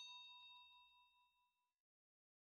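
Notification-bell 'ding' sound effect ringing out with a few clear pitches and fading away, gone by about a second and a half in.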